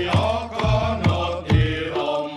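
Reog Ponorogo gamelan accompaniment: drum strokes about twice a second over a sustained low tone, with a held melody line above.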